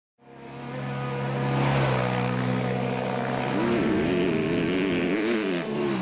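Motorcycle engine fading in and running at a steady pitch, then revved up and down several times from about halfway in.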